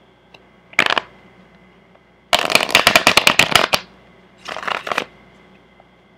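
A deck of cards being shuffled by hand in three bursts. The first is a short one about a second in, then a longer run of rapid card flicks from about two seconds to nearly four, then another short one near five seconds.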